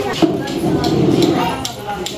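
Several people talking at once in a general chatter, with a few short clicks scattered through it.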